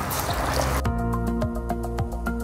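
Hot oil sizzling as a dal vada is slipped into a kadai for deep-frying, a hissing crackle. About a second in, background music with a held chord comes in over it.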